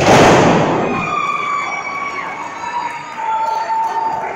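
A wrestler slammed onto the wrestling ring's canvas-covered mat: one heavy, loud thud with the ring boards rattling and ringing on for about a second. Voices from the crowd shouting follow.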